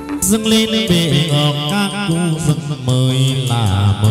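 Chầu văn (hát văn) ritual music: a gliding, melismatic sung chant over plucked moon lute (đàn nguyệt) notes, continuous and loud.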